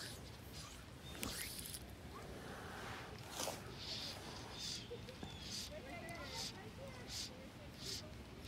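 Fly line being stripped in by hand in short pulls: a soft rasping swish of the line through the fingers and rod guides, repeating about every half second from about three seconds in.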